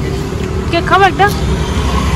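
Steady low rumble of road traffic, with a brief voice of a few syllables about a second in.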